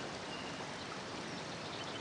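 Steady outdoor background ambience: a faint, even hiss with no distinct events.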